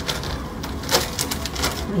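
Light clicks and rustles of mask packaging being handled, more of them in the second half, over a low steady room hum.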